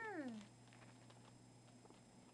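A single short call, about half a second long at the very start, falling steeply in pitch; then only faint light ticks and rustles.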